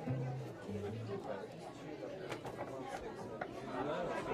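Background chatter of many people talking, with a few low acoustic-guitar notes in the first second or so.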